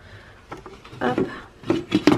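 Plastic lid of a countertop cooking food processor being set onto its stainless steel bowl and closed, with a few light knocks and clicks, the sharpest near the end.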